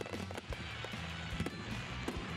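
Fireworks crackling and popping in irregular small bangs, over a backing of music with a steady low bass.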